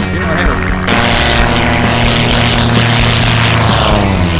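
Background music, then, about a second in, the engine and propeller of a light single-engine plane come in loud and steady as it makes a low, close pass. Its pitch falls near the end as it goes by.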